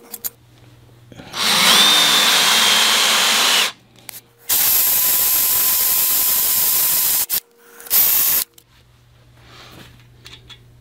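Cordless drill with a number 6 bit boring into a cast-iron engine block: two long runs of a couple of seconds each, then a short burst near the end, each with a steady motor whine over the cutting noise.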